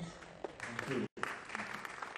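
Audience applauding, with a voice briefly heard through the clapping; the sound cuts out for a moment about a second in, then the applause carries on.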